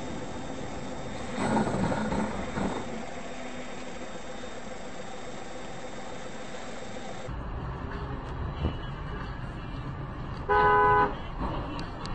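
Steady road noise of a moving vehicle heard from inside, with a louder rush a couple of seconds in. Later a car horn sounds once, a loud honk of about half a second.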